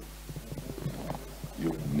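A brief pause in a man's speech over a steady low electrical hum, with faint voice sounds; he starts speaking again near the end.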